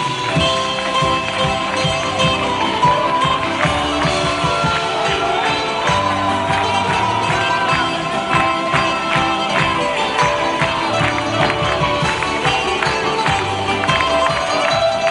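Live band music with a steady beat, marked throughout by crisp, regular percussive strokes.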